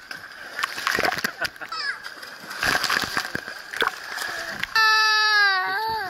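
Pool water splashing and sloshing close to a camera sitting at the water's surface, as children slide down a water slide into the pool. Near the end a child lets out one long, loud cry after falling over.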